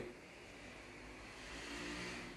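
Faint steady background noise with a low hum, growing a little louder toward the end.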